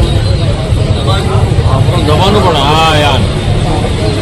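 Indistinct voices of a small outdoor gathering over a loud, constant low rumble. About two seconds in, one voice stands out, rising and falling for about a second.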